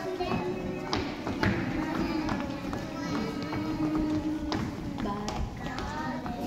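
Instrumental music from a children's song, with long held notes and a few scattered, irregular taps.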